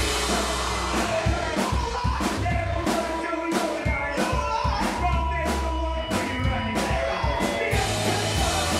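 Live rock band playing: electric guitars, bass and drum kit on a steady beat of about two drum hits a second, with a voice singing over it.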